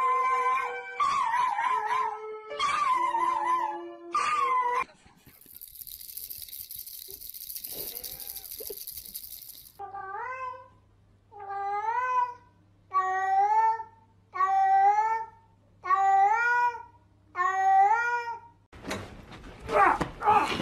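Toy electronic keyboard holding notes under wavering, wailing tones for about five seconds. Then, after a hiss, a cat recording played back: about seven meows roughly a second and a half apart, each rising then falling, over a low hum. A burst of noise near the end.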